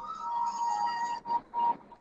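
A broadcast graphics sting: a bright, chime-like steady tone with a few higher ringing notes, breaking up into short pieces a little past the middle.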